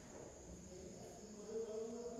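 Faint, steady, high-pitched insect chirring, with a faint wavering hum coming in about halfway through.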